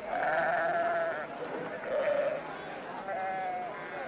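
Sheep bleating: three wavering bleats, the first about a second long, then two shorter ones about two and three seconds in.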